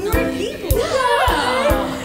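Musical-theatre backing track with a steady beat, about two beats a second, with several cast voices calling out over it at once.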